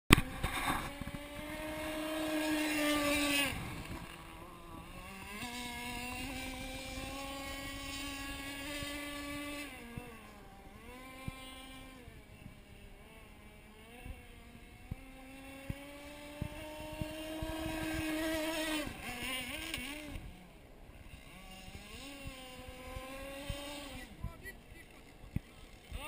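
Radio-controlled model boat's Zenoah 29.5 cc two-stroke petrol engine running on the water, its pitch rising and falling as the throttle opens and eases. It is loudest around three seconds in and again just before twenty seconds, and fades toward the end.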